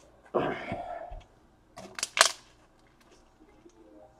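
Small handling noises: a brief rustle, then a few sharp clicks about two seconds in, the loudest two close together.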